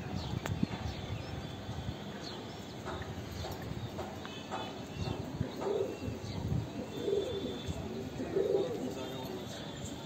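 Domestic pigeon cooing, three coos in the second half, each a short low rolling call.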